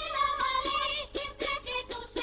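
Singing with music from a 1941 film soundtrack: a voice carrying a melody with a wavering vibrato, in short phrases.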